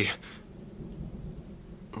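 Steady rain of a thunderstorm, with a low rumble of thunder underneath.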